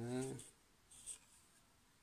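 A drawn-out spoken "uh", then a short, faint rub about a second in as hands handle a wooden axe handle.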